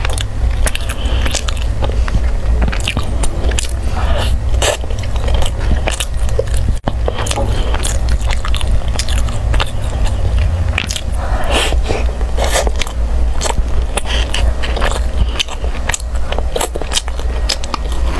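Close-miked eating: chewing of sticky purple rice, with irregular sharp clicks of a metal spoon scraping and tapping inside a small tin can, over a steady low hum.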